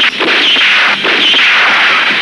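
Movie gunfire sound effects: sharp shots, a couple in quick succession near the start and another about a second in, over a loud dense backdrop.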